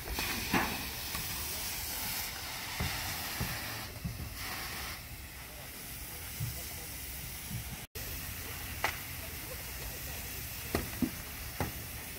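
Fire hose water stream hissing as it is sprayed onto smouldering, charred shed debris, with a few small knocks.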